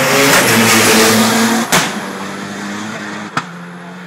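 Race car engine at high revs passing close by, loudest in the first second and a half and then fading as it pulls away. Two sharp cracks come about a second and a half apart.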